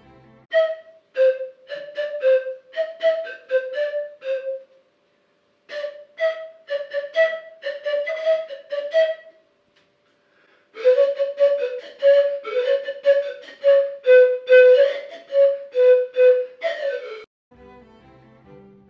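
Kuvytsi, Russian pan pipes, played in short, breathy notes on a few neighbouring pitches. The tune comes in three phrases with short pauses between them, and the last phrase is the loudest.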